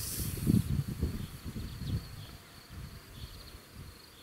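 A steady high-pitched insect trill. Irregular low rumbling noise, loudest over the first two seconds, dies away after that.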